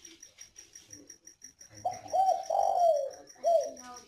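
Spotted dove cooing: a phrase of several rising-and-falling coos starting about two seconds in, then one shorter coo near the end. A high, rapid chirping pulses steadily throughout.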